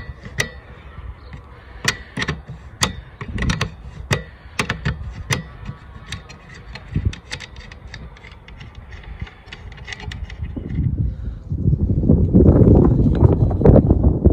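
Ratchet ring spanner clicking in irregular strokes as it turns the loosened nut off a rear wiper arm's spindle. A louder low rumble takes over near the end.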